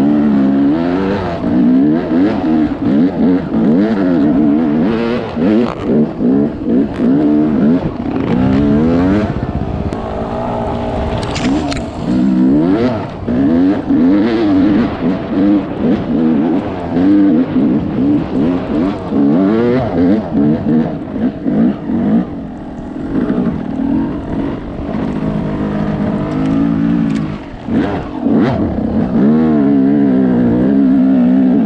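Dirt bike engine revving up and down continually as it climbs a snowy trail, the throttle opened and closed every second or so, so the pitch keeps rising and falling.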